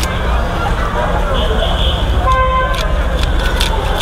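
Busy street ambience: a steady traffic rumble and background chatter, with a short horn toot about two and a half seconds in.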